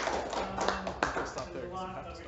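Audience applause that thins out and fades over the first second or so. Near the end a voice starts.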